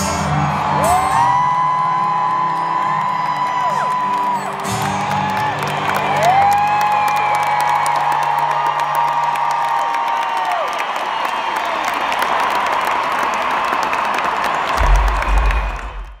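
Live stadium concert music heard from high in the stands, with long held notes that swoop up at the start and fall away at the end, over a crowd cheering and whooping throughout. The bass drops out about ten seconds in, and a short low rumble comes near the end.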